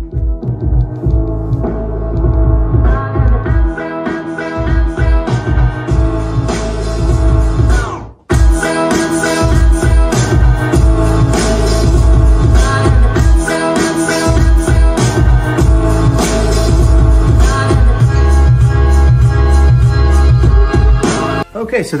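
Music played through a Samsung HW-Q600C soundbar and its wireless subwoofer as a sound test, with strong, heavy bass. The music cuts out for a moment about eight seconds in.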